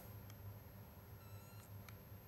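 Near silence: a faint steady hum, with a faint short tone and a click late on.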